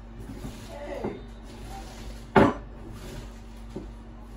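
Hands squeezing and massaging salted shredded cabbage in a glass bowl, bruising it so it releases its juices. A single sharp knock, the loudest sound, comes about halfway through.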